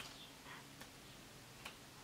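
Weak finger-snap attempts with the left hand: a few faint, dull clicks spread across a near-silent room, the loudest at the start and another about one and a half seconds in.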